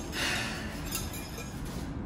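A utensil stirring in a small stainless-steel saucepan of thickening white sauce: light metallic clinks and scrapes, mostly in the first second.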